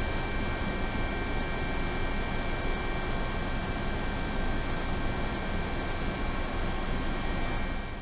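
Steady aircraft engine noise: an even rushing sound with a few thin, steady high whining tones.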